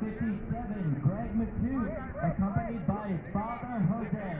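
Several voices calling out at once from youth soccer players and spectators, overlapping with no single clear speaker.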